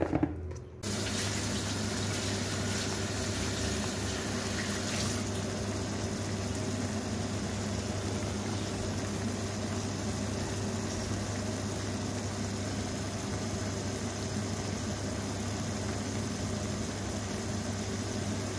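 Chopped tomatoes and green peppers simmering and sizzling in oil in a frying pan: a steady bubbling hiss with a low steady hum beneath it. A short handling sound comes at the very start.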